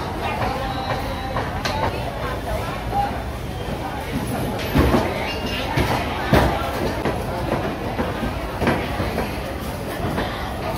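Background voices in a busy market, broken by a few sharp knocks of a knife chopping meat on a wooden cutting board, the loudest about five and six seconds in.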